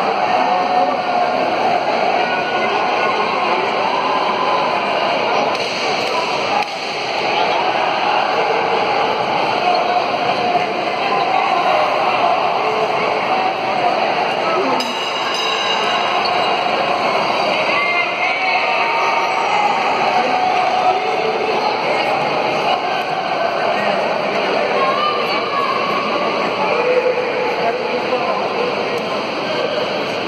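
Indistinct voices talking and calling out, steady throughout, with some music underneath.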